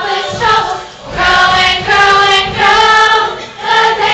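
A large young stage chorus of children and teenagers singing together. There is a short break about a second in, then long held notes.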